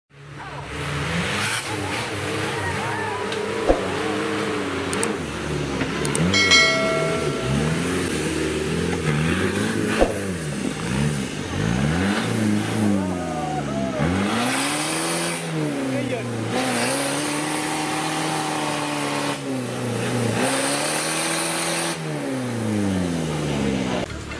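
Off-road 4x4 competition vehicle's diesel engine revving hard under load up a steep muddy bank. The revs rise and fall over and over, every second or two.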